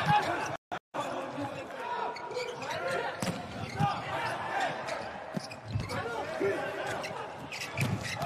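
A volleyball being struck during a rally: several short, sharp hits of hands on the ball, over voices and chatter in the hall. The sound cuts out briefly a little under a second in.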